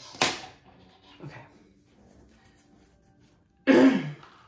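A woman's short, breathy puff just after the start and a loud, brief vocal burst near the end, with faint music underneath.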